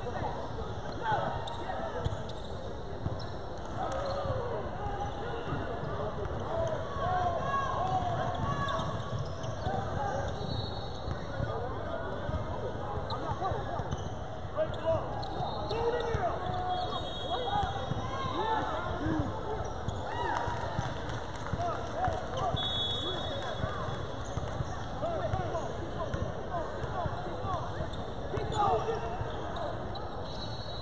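Indoor basketball game sound: many indistinct voices from spectators and players calling out, with a basketball being dribbled on the hardwood court. Brief high squeaks come now and then.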